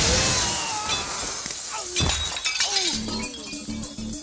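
A glass panel shattering in a loud crash, then shards tinkling as they fall and scatter, with a sharp knock about two seconds in. Background music comes back in near the end.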